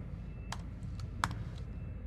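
Three separate computer-keyboard keystroke clicks within about a second, as copied text is pasted into a document, over a faint low hum.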